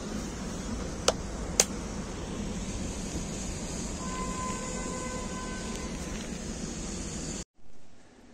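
Steady outdoor din of rain and city traffic, with two sharp clicks about a second in and half a second apart, and a held tone from about four to six seconds in. It cuts off suddenly near the end.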